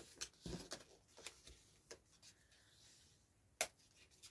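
Faint taps and rustles of a card strip being folded by hand into a zigzag and pressed against a cutting mat, with one sharper click about three and a half seconds in.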